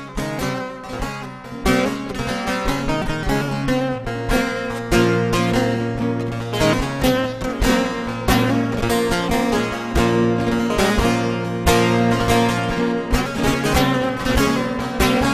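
Bağlama (Turkish long-necked saz) played with a plectrum: a fast picked and strummed instrumental introduction over a steady low drone from the open strings, beginning abruptly.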